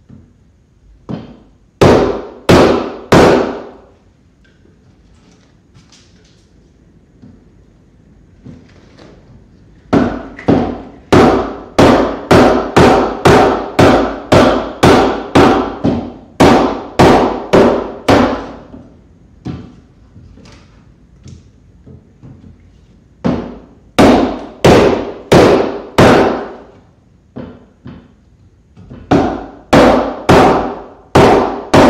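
Wooden mallet striking a wooden-handled timber-framing chisel, chopping waste out of a bridle-joint slot in a four-by-four rafter. Sharp knocks come in runs of rapid blows, about two a second, with quieter pauses between them.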